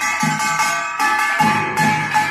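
Pungmul percussion: a kkwaenggwari, the small brass gong, struck repeatedly with a wooden mallet, its metallic ringing carrying between strokes, with drum beats underneath.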